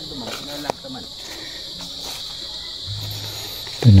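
Steady high-pitched chorus of insects, with faint distant voices in the first second and a single short click just before a second in.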